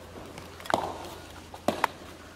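Short, sharp knocks and slaps of body contact and footwork between two martial artists working a close-range arm trap on foam mats: one about a third of the way in, then two in quick succession near the end.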